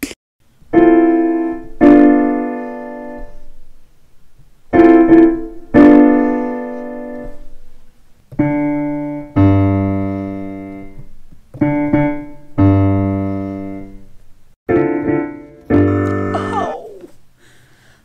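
Electronic keyboard with a piano sound playing a slow chord progression: about ten chords struck in pairs, each left to ring and fade. From about eight seconds in, low bass notes sound under the chords.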